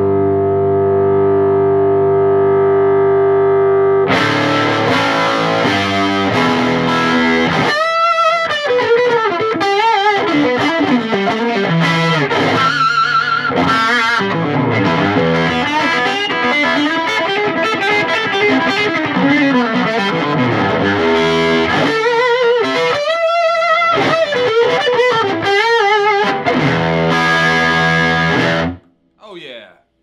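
Fender Telecaster played through a cranked Oldfield Woody 5-watt combo with an 8-inch speaker, tone and volume all the way up, so the amp's own drive saturates the sound. It opens with a held, overdriven chord ringing out for about four seconds, then moves into lead lines with string bends and vibrato, stopping shortly before the end.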